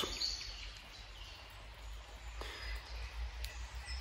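Quiet forest background: a faint low rumble with a few faint, high chirps of distant birds.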